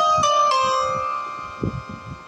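Melody notes from a phone keyboard app's synthesized voice: three descending notes, the last one held and fading out as the tune ends. Soft low knocks near the end.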